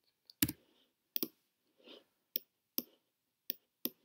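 About six sharp clicks from a computer mouse and keyboard, spaced unevenly, with a softer brushing sound between some of them.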